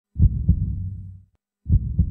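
Heartbeat sound effect: a low double thump (lub-dub) heard twice, about a second and a half apart, each trailing off in a low rumble.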